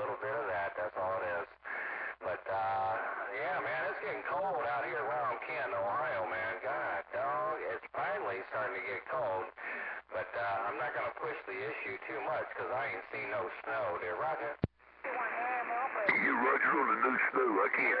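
A distant station's voice received over a radio speaker, thin and hard to make out. There is a sharp click and a brief dropout about fifteen seconds in, and a louder transmission follows.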